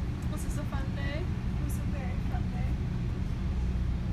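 Interior of a moving passenger train car: the train's steady low rumble, with faint talking over it.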